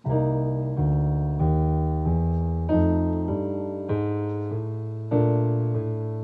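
Digital piano playing a jazz ii–V–I in B flat. The left hand walks a bass line in steady quarter notes, about one and a half a second, up the scale with chromatic passing notes. The right hand plays chord voicings of thirds and sevenths, and each note fades until the next is struck.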